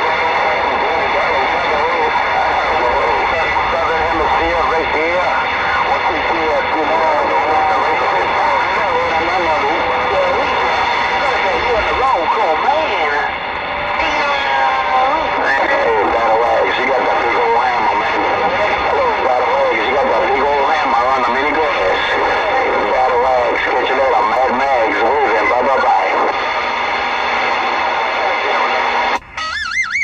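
CB radio receiver playing a jumble of garbled, overlapping voices from several stations at once over steady static, with no one voice intelligible. The jumble cuts off abruptly about a second before the end.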